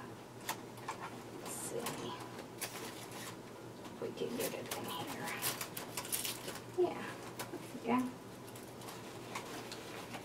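Quiet rustling and crinkling of ribbon and artificial greenery being handled and tucked into a bow on a grapevine wreath, with scattered light clicks and taps. Two brief soft vocal sounds come about seven and eight seconds in.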